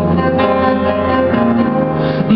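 Grand piano playing sustained chords in live song accompaniment, with a new chord struck about half a second in and another near one and a half seconds.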